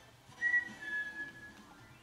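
A person whistling two notes: a short higher one about half a second in, then a longer, slightly lower one held for nearly a second, over soft background music.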